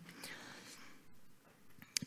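Quiet room noise through the talk's microphone, with a soft breath in the first second and a small click just before speech resumes.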